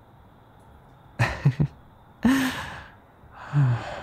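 A man's soft breathy chuckles and sighs: three short exhalations, the first about a second in.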